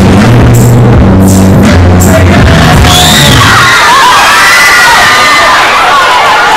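Loud music with a heavy bass line, which stops about three and a half seconds in; a crowd cheers and shouts with high-pitched screams as it ends.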